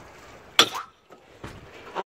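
A large knife chopping through a dorado onto a wooden table: one sharp chop just over half a second in, then lighter knocks about a second later.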